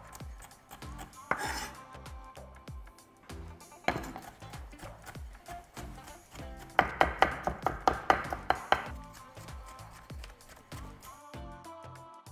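Chef's knife chopping red pepper, onion and garlic finely by hand on a wooden cutting board. A few separate strokes come early, then a fast run of about five strokes a second from about seven to nine seconds in, over background music.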